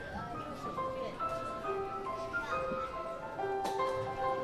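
Live band music starting up: a melody of short, separate notes steps up and down, with voices underneath and a single sharp knock near the end.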